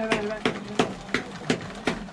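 A sharp click repeating steadily about three times a second, with a voice faintly between the clicks.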